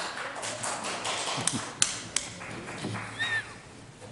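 Shuffling and movement noise of several people getting up and walking about, with three sharp taps in the middle and a short squeak near the end.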